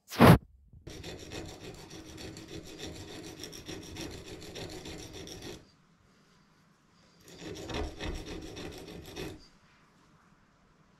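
A sharp knock at the start, then a hardened steel rod rubbed back and forth by hand on coarse 80-grit sandpaper laid on a flat plate: two spells of steady scraping, the first about four and a half seconds long, the second about two seconds, with a short pause between.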